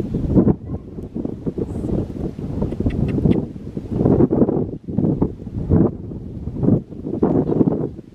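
Wind buffeting the microphone in uneven gusts, a low rumbling rush that swells and drops every second or so.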